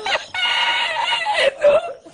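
A long, high-pitched, squealing laugh: one steady shrill note of about a second, then a shorter, lower falling note.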